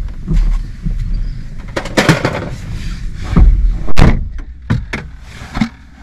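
Sharp knocks and clunks of hard plastic dashboard trim being handled in a car's cabin: a handful of separate knocks, the loudest about four seconds in, with rustling between.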